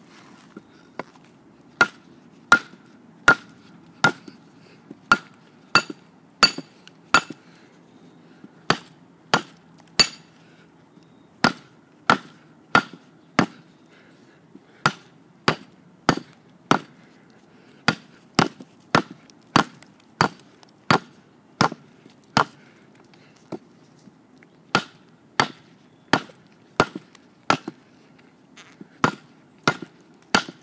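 Schrade SCHF1 fixed-blade knife chopping into hard, dead wood: a long series of sharp blade-on-wood strikes, about one every three-quarters of a second, in runs broken by short pauses.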